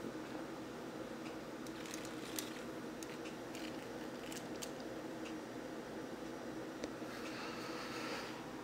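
Quiet handling noise: a few soft clicks and rustles as a plastic action figure is turned by hand on a hard tabletop, over a low steady room hum.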